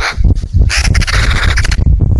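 A crow-family bird gives a rasping call of about a second, over heavy low rumbling buffets of wind on the trail camera's microphone.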